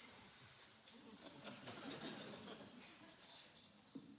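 Near silence in a theatre hall: faint scattered audience noises after applause has died away, with a short soft knock near the end.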